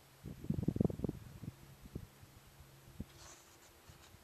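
Low rumbling bursts on the camera microphone, strongest in the first second and a half, then a couple of single thumps, over a faint steady hum.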